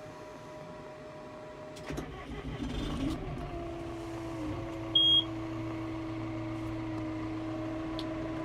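John Deere tractor's diesel engine started from inside the cab: about two seconds in it cranks and catches, then settles into a steady idle with an even hum and a steady whine above it. A short high beep sounds about five seconds in.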